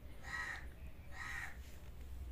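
Two harsh bird calls about a second apart, each lasting about half a second.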